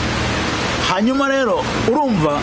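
A man speaking in short phrases from about a second in, over a steady, loud hiss.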